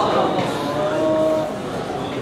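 A man's voice chanting a melodic recitation into a microphone, holding one long steady note for about a second before it trails off.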